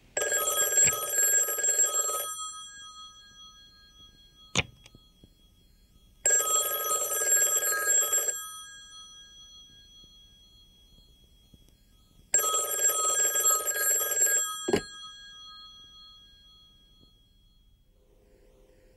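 Old desk telephone's bell ringing three times, each ring about two seconds long and fading away, about six seconds apart. A sharp click follows the first ring and another comes just after the third.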